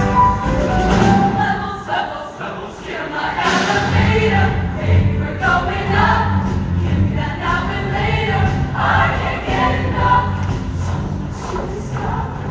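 A large show choir singing over instrumental accompaniment with a strong bass line. The bass drops back briefly and returns about four seconds in. It is heard from the audience seats of an auditorium.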